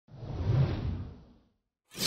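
A whoosh sound effect swells and fades over about a second and a half. After a short silence a second, brighter whoosh begins right at the end.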